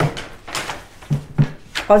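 Speech at a meeting table, with a brief sharp knock about half a second in and a woman's voice starting near the end.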